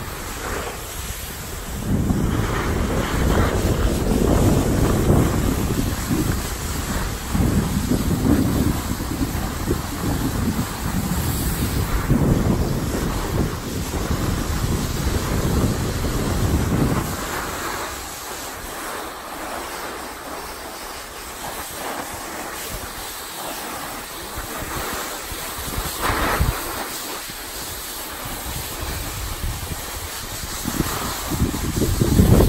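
Wind rushing over the camera microphone while riding downhill on a snowboard, mixed with the board sliding and scraping over the snow. It is loud and rough for about the first half, then drops to a quieter hiss.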